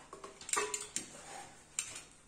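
A few light clicks and taps as a snap-off utility knife and a styrofoam sheet are handled on a cutting mat, with sharp clicks about half a second in, around a second in and again near the end.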